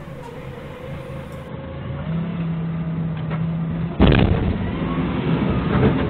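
Doosan 4.5-ton forklift's engine revving harder as it drives out over a drop, then a single heavy thud about four seconds in as the forklift's rear end slams down onto the building's concrete floor, cracking it.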